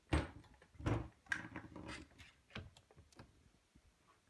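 Several dull knocks and bumps, loudest in the first second or so and fading towards the end, as a large fifth-scale RC truck is turned over onto its side and its chassis and wheels bump against the tabletop.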